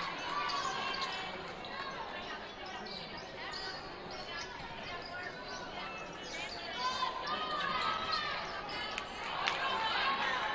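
A basketball bouncing on a hardwood gym floor, with sneaker squeaks and spectators' voices echoing around the gym.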